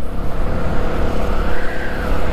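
Honda CB125R motorcycle under way: steady rushing wind noise on the microphone, with the engine running underneath as a faint steady tone.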